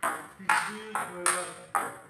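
Table-tennis rally: the celluloid ball clicks sharply off the paddles and the table, about five hits in quick succession roughly half a second apart.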